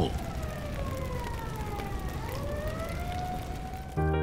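Emergency siren wailing, its pitch sliding down and then rising again, over a steady rushing noise.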